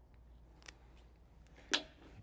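Quiet room tone with a low steady hum, broken by a faint click about two-thirds of a second in and a sharper, brief click near the end.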